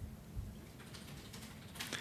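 Faint tapping on a computer keyboard over quiet room tone, with a soft low thump about half a second in.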